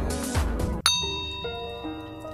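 Background music that breaks off a little less than halfway in at a single bright ding, whose ringing tones fade slowly while gentler music takes over.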